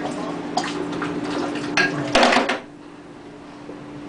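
Glass beer bottle emptied into a kitchen sink: beer splashing into the basin, with a few short clinks of the bottle and a louder clatter about two seconds in, then quieter.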